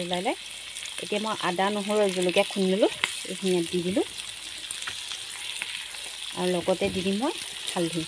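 Chunks of pork belly sizzling steadily as they fry in their own rendered fat in a pan, with a few light clicks of the spoon among them. A voice comes and goes over the sizzle in short stretches.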